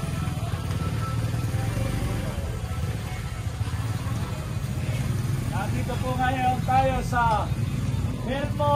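Motorcycle engine running at low speed with a steady low rumble. From about five seconds in, a voice calls out for a couple of seconds in long, sliding tones.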